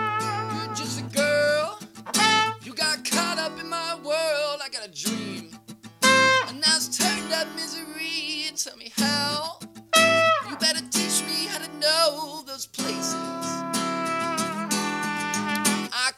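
Live acoustic music: an acoustic guitar strummed over a steady low note, under a melody line that wavers with vibrato and slides down in pitch in places, in short phrases.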